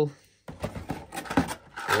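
Faint rustling and light taps of cardboard minifigure packets being handled, between bits of speech.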